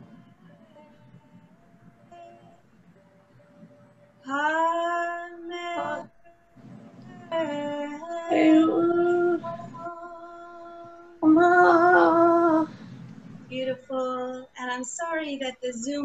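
A woman chanting in long, held sung notes at a few steady pitches. It is faint for the first few seconds and grows loud from about four seconds in. The loudest held note comes a little past the middle.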